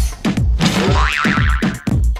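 Electronic dance music with a steady kick-drum beat. About a second in, a springy sound effect warbles rapidly up and down in pitch over the beat.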